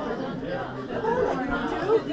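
Many people talking at once: overlapping chatter of a church congregation greeting one another during the passing of the peace, in a large room.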